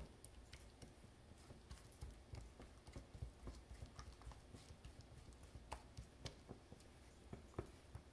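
Faint irregular clicks and scrapes of a silicone spatula stirring and pressing thick batter against the sides of a small stainless-steel bowl, a few taps louder in the second half.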